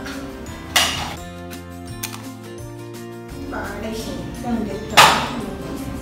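Light background music with two sharp clicks of small hard-plastic items being handled, one about a second in and a louder one near the end.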